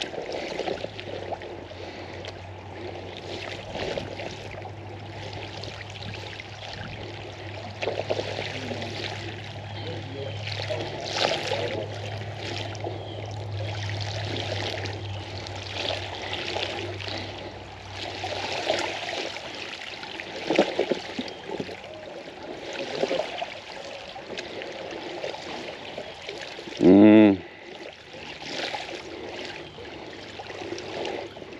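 Bicycle tyres rolling through a shallow creek over a rock bed, with steady splashing and running water that rises and falls in surges. About three seconds before the end, a short, loud pitched sound stands out above the water.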